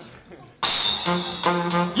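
A brass band with saxophone, trumpet, sousaphone and drums comes in suddenly about half a second in with a loud crash, then plays short, repeated brass chords.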